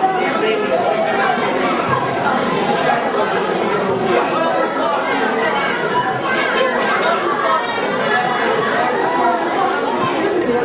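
A group of boys all talking over one another, a steady babble of chatter with no single voice standing out.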